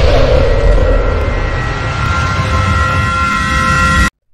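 Intro sound effect for an animated logo: a loud, deep, noisy rumble, with thin steady high tones joining about halfway through. It cuts off suddenly at the end.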